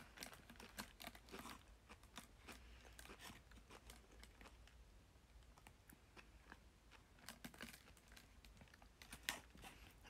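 Near silence with faint chewing and small crunches and clicks from eating a candy, a clump near the start and a few louder clicks near the end.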